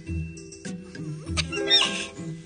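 Bouncy cartoon background music with a steady low beat. From about a second and a half in comes a brief high-pitched cartoon sound with a wavering pitch, the loudest moment.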